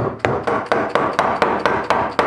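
Wood chisel chopping out a mortise in a cylindrical ash leg, cleaning up the drilled holes: a fast, even run of sharp knocks, about five a second.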